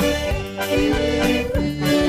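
Live band music led by a piano accordion playing the melody, with keyboard accompaniment and a regular beat.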